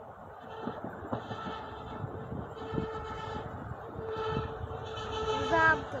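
Approaching SA106 diesel railbus sounding its horn in several separate blasts of one steady pitch, growing louder as it nears. A few faint knocks early on, and a short wavering pitched sound, the loudest moment, just before the end.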